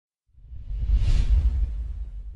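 Logo intro sound effect: a whoosh over a deep rumble that swells in shortly after the start, peaks around the middle and begins to fade near the end.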